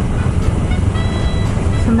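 Kawasaki Ninja 650 parallel-twin engine running at a steady cruise, mixed with road and wind rumble on the camera microphone.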